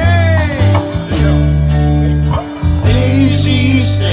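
Live band playing the instrumental opening of a song: electric guitar notes over steady, changing bass-guitar notes, with a faint regular beat.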